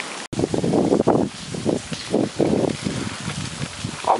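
Wind buffeting the microphone in irregular rumbling gusts, after a momentary dropout about a third of a second in.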